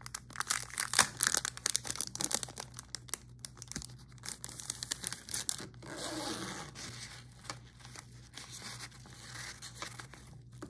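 Clear plastic packaging of a sticky-note pack crinkling and crackling in the hands, with dense crackles for the first few seconds. After that come softer rustling and rubbing as the pad is handled against the fabric pencil case.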